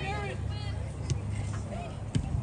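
Voices of players and spectators at a soccer match, shouting calls that bend up and down in pitch, over a steady low rumble. Two brief sharp ticks, about a second in and near the end.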